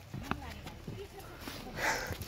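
People talking quietly, with a few scattered knocks of footsteps on stone-slab steps and a louder rustle near the end.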